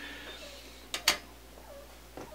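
Two quick light clicks close together about a second in: a synth circuit board and a bent sheet-metal (roof-flashing) bracket being set down and fitted together on a wooden bench.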